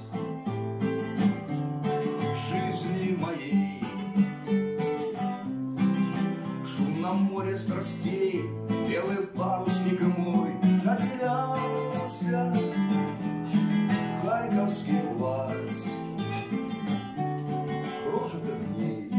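Acoustic guitar played solo: an instrumental break in a waltz song, bass notes and chords under a melody line.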